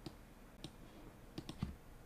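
A few faint, scattered clicks, three of them close together about a second and a half in.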